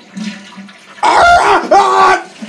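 A quiet rushing hiss like running water in the toilet, then, about a second in, a voice crying out loudly for about a second.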